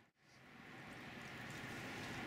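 A moment of silence, then faint, steady outdoor background hiss fading in.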